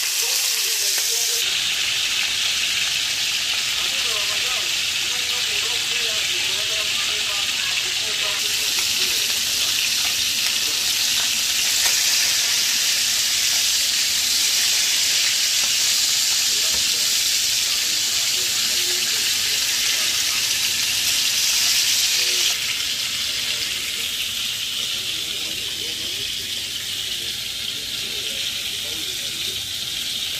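Barracuda steaks frying in hot oil in a pan: a loud, steady sizzle whose level shifts a few times.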